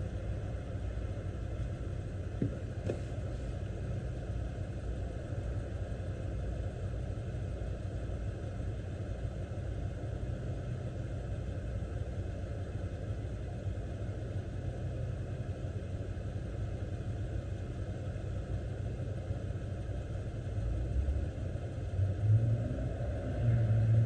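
Car engine idling steadily, a low rumble heard from inside the cabin. A brief hum comes in near the end.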